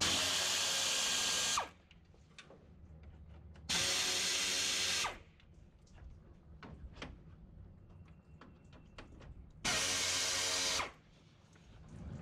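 Power drill/driver running in three short bursts, each a second or so long, backing out the Phillips-head screws that hold the radiator shroud on. Faint clicks and handling noises fill the gaps between bursts.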